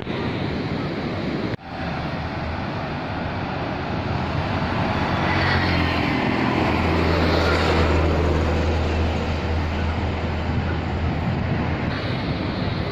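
Wind and breaking surf hiss on the microphone, cut by a brief dropout about a second and a half in. A low, steady engine drone builds from about four seconds in, is loudest midway and fades before the end, as a motor vehicle passes close by.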